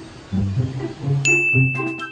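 A bright, ringing ding sound effect strikes about a second in and rings on, over background music with low, steady notes.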